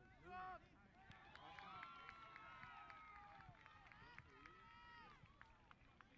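Faint, distant shouting from players and spectators on a soccer field. There is a short loud call just after the start, then several voices call out together for a few seconds, one of them holding a long yell.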